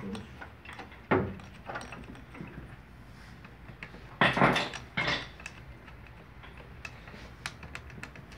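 Metal hand tools and fittings clinking and knocking as a mechanic works on a diesel fuel filter housing, with a sharp knock about a second in and a louder clatter about four seconds in.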